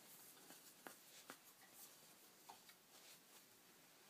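Near silence: room tone with a few faint, brief clicks from a guitar neck and body being handled.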